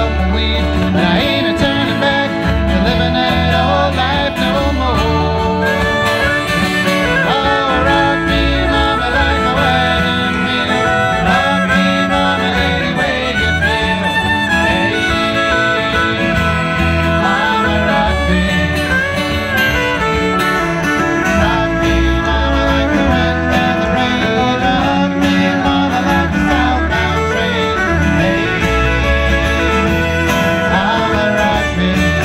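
Acoustic folk band playing a bluegrass-style song: strummed acoustic guitar, fiddle, banjo and frame drum, with singing.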